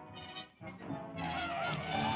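Orchestral film score: a short swell, then from about a second in sustained, honking brass notes over low held notes.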